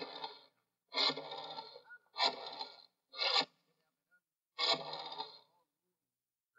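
Sound effect of a rotary telephone being dialled: five separate dial turns, each a short whirring run that starts sharply and dies away, about a second apart.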